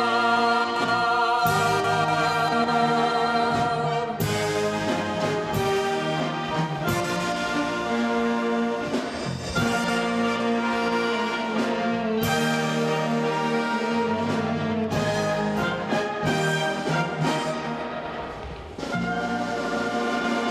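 Concert wind band playing, with flutes and trombones and a singing voice over the band. Near the end the music thins out for a moment, then the full band comes back in.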